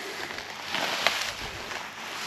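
Footsteps through dry, matted grass: a rustling hiss that swells about a second in.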